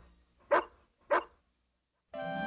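Rough collie barking twice, two short sharp barks about half a second apart.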